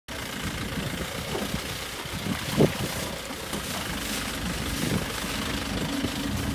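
Safari jeep driving over a rutted dirt track: steady engine and road noise, with one brief louder knock about two and a half seconds in.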